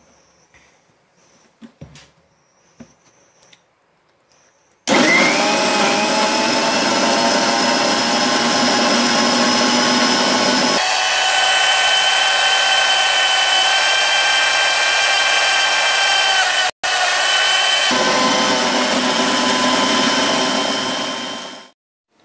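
Electric blender running at full power, blending orange segments with sugar into pulpy juice. A few light clicks come first; the motor starts about five seconds in and runs loud and steady, its pitch shifting higher partway through and dropping back later, then it stops just before the end.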